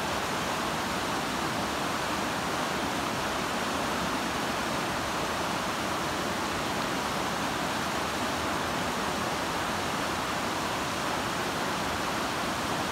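Steady rushing of a whitewater river running over rocks.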